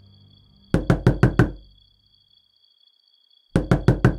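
Knocking on a door by a visitor: a quick run of five knocks about a second in, then a second run of knocks near the end.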